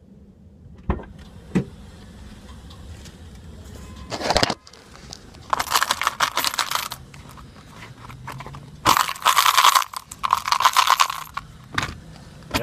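Rustling and clattering in several bursts, with a few sharp clicks near the start and a short knock about four seconds in: handling noise from the recording phone being moved and rubbed about.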